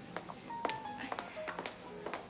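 Footsteps of high heels on a hard floor, a sharp tap about every half second, over soft background music.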